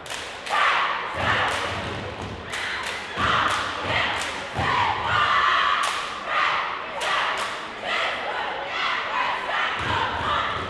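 A cheerleading squad doing a stomp-and-clap cheer on a hardwood gym floor: sharp claps and stomps in a steady rhythm, about two a second, with the girls shouting a chant in unison between the beats.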